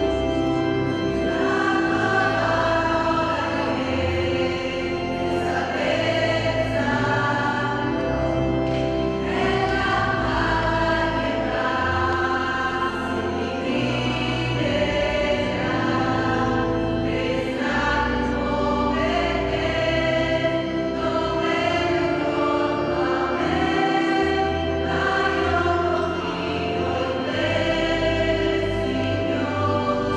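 A choir singing a slow hymn in several voices, over low instrumental notes held for a few seconds each.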